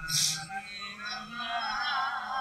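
A faint male singing voice over a microphone and loudspeaker, a melodic chanted line trailing on, with a short hiss right at the start.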